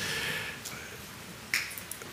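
Quiet hall ambience with the echo of a voice dying away, then a single short, sharp click about one and a half seconds in.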